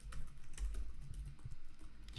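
Typing on a computer keyboard: a quick, steady run of light key clicks.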